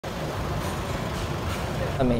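Steady city street noise: a vehicle engine running amid traffic hum, with indistinct voices in the background.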